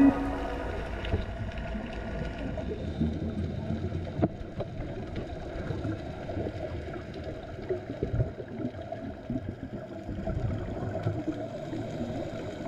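Underwater sound of a scuba diver's exhaled air bubbles gurgling up from the regulator, over a rough underwater hiss with scattered sharp clicks.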